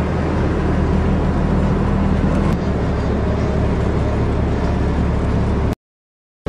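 Diesel van's engine and road noise heard from inside the cabin while driving, a steady low drone whose low tone shifts about two and a half seconds in. The sound cuts out abruptly to silence near the end.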